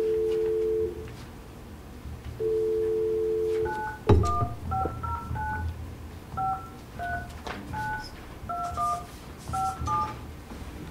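Telephone line with a steady two-note dial tone sounding twice briefly, a loud thump about four seconds in, then a quick run of keypad touch-tone beeps as a number is dialed.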